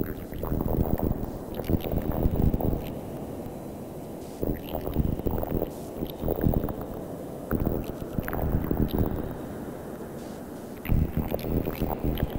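Modular synthesizer playing a low, noisy, rumbling texture with no clear melody or beat. It swells and falls irregularly, with louder stretches in the first few seconds, around the middle and near the end.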